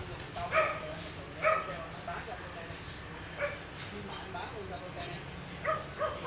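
A dog barking: short single barks a second or two apart, the first two loudest.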